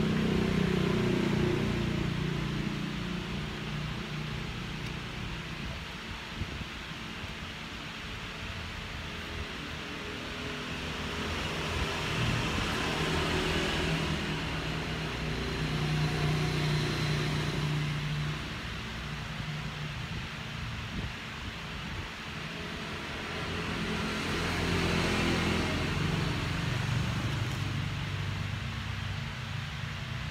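Passing motor traffic: engine noise swells and fades several times, loudest at the start, about halfway through and near the end, over a steady background hum.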